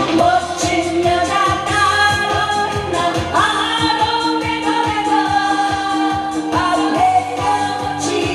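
A woman singing a Korean trot song live into a microphone over an amplified backing track with a steady beat; she holds one long note for about three seconds in the middle.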